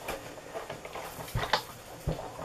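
Sizzix Big Shot die-cutting machine taking in the acrylic cutting-plate sandwich: plastic plates sliding against the machine, with two light clicks about one and a half seconds in.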